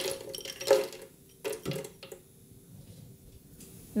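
Frozen blueberries tipped from a glass bowl into a plastic Vitamix blender jar, clattering and knocking in a few bursts over the first two seconds.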